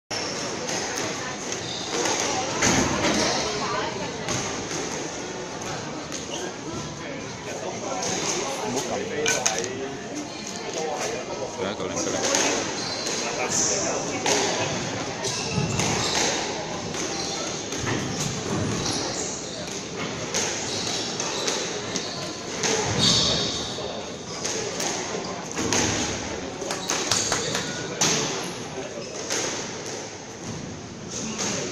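Squash rally: the ball cracks off rackets and thuds against the court walls at irregular intervals, ringing in a large hall, over steady background chatter.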